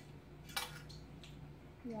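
Metal measuring spoon clinking sharply once about half a second in, with a couple of fainter taps, as water is spooned out for the slime.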